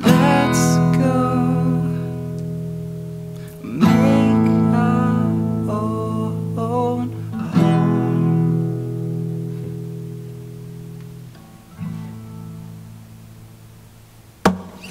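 Acoustic guitar strumming the final chords of a song: three full chords about four seconds apart, each left to ring out and fade, then a softer strum near the end.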